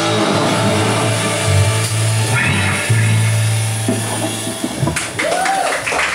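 Live rock band playing the closing bars of a song: electric guitar and keyboard over a drum kit, with a long held low note. Near the end, a run of sharp drum and cymbal hits.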